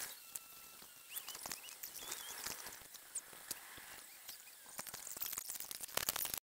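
Handling noise on a small camera's microphone: scattered clicks and rustles, with a few short, faint high chirps among them.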